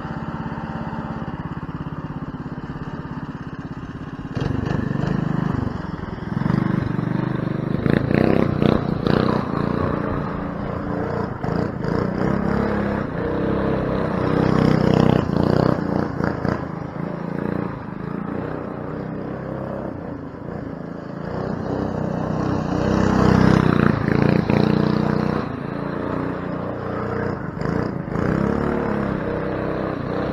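Go-kart's Predator 212 single-cylinder four-stroke engine, with an exhaust header and silencer, running steadily at first and then revving up and down as the kart drives off. It is loudest in two spells of hard revving, about a third of the way in and again near three-quarters of the way through.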